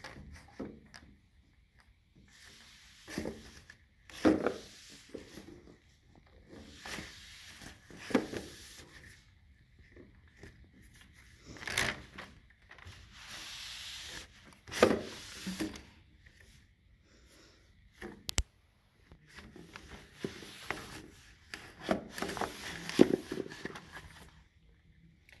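Microfiber dust mitt rubbing along window blind slats: irregular swishing wipes, with the slats knocking and clacking against each other, and a single sharp click late on.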